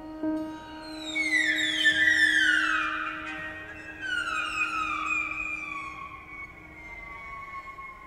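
Grand piano strings played from inside the instrument: high ringing tones that slide down in pitch, one long fall about a second in and another about four seconds in, the last sinking to a thin, fading held tone. A low held note dies away underneath during the first half.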